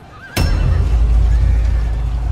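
Battle sound effects over background music: a horse whinnies briefly, then a sudden sharp hit about half a second in opens into a loud, sustained deep rumble.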